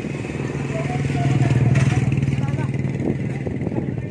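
A small engine running steadily at one pitch, growing louder about a second in and easing off again after its peak near the middle, as it passes close by.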